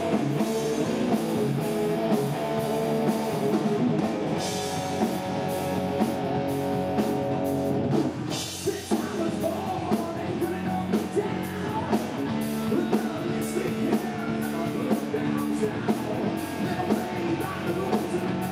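A live hard rock band playing: distorted electric guitar, bass guitar and drums, with a male lead singer. The music drops briefly about eight seconds in, then carries on.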